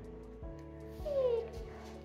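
German Shepherd puppy giving a short falling whine about a second in, over background music with steady sustained tones.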